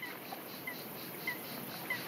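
Faint outdoor ambience with a small bird chirping, four short high calls about every half second.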